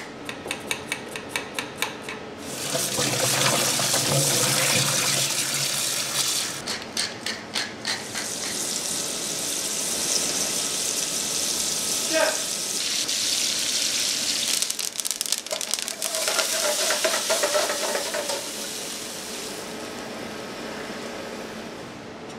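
Kitchen work: quick rhythmic knife strokes, about five a second, peeling parsnips against a plastic cutting board. Then a long steady hiss, broken twice by short runs of the same strokes, fading toward the end.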